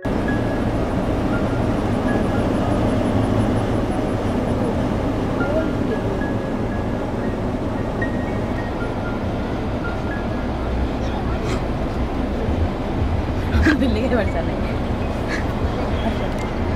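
A car moving along a road, heard from inside: steady road and wind noise with a low rumble, and a few brief sharper sounds near the end.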